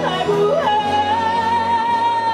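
Live country band: a woman sings one long held high note, with a quick break in pitch about half a second in, over strummed acoustic guitars, fiddle and bass guitar.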